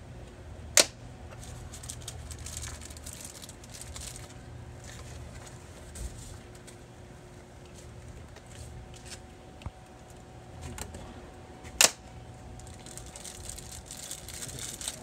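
Plastic removal clips being pressed into the slots of an RV door's inner window frame: two sharp clicks, about a second in and near the end, with faint handling taps between them over a low background rumble.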